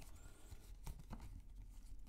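Faint rustling and a few light clicks of tarot cards being handled in the hands.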